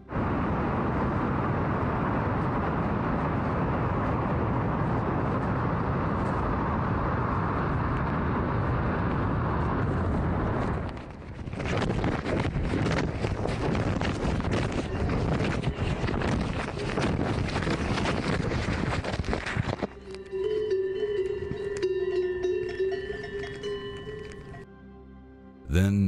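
Wind rushing over a phone tucked away in a wingsuit pilot's clothing: a loud, steady, muffled rush for about ten seconds, then a harsher crackling, buffeting rush. About twenty seconds in the wind noise stops, and quieter cowbells ring with a steady, wavering tone.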